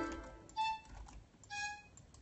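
The looped beat cuts off at the start, then two short single notes from a flute-like software instrument sound about a second apart, each held for a fraction of a second, as notes are auditioned in FL Studio's piano roll.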